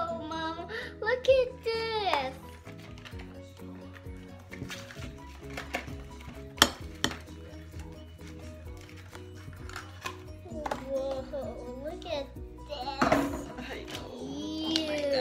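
Metal spoon scraping and clinking against a ceramic bowl while slime mixture is stirred, with a few sharp clinks in the middle, the loudest about six and a half seconds in, over background music.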